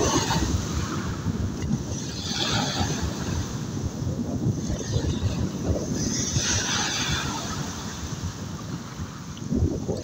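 Sea waves washing, their hiss swelling about two and a half and six and a half seconds in, over a constant low rumble of wind buffeting the microphone.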